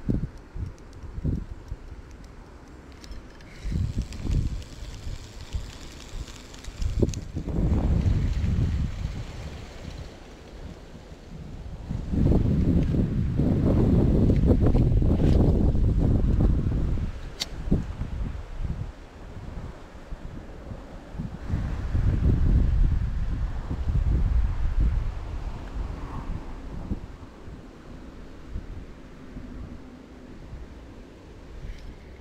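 Wind buffeting the microphone in gusts of low rumbling noise, the longest and loudest near the middle, with a few sharp clicks in between.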